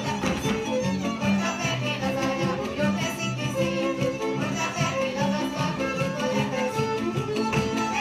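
Hungarian folk dance music from Gyergyó, played in a steady, even dance rhythm with a fiddle leading.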